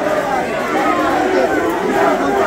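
Dense crowd of football supporters shouting and chanting, many voices overlapping into one continuous din at a steady loud level.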